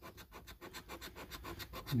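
Scratch-off coating on a Sapphire Multiplier scratchcard being scraped away, many quick back-and-forth strokes a second, uncovering the winning numbers.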